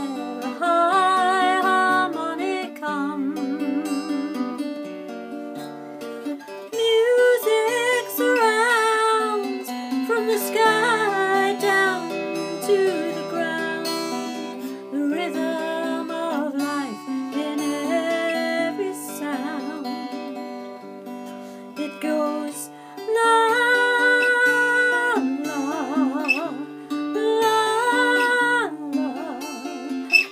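Acoustic guitar picked with the fingers, with a woman singing over it in long, wavering held notes.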